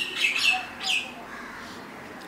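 Two brief high-pitched chirps, each falling in pitch, less than a second apart.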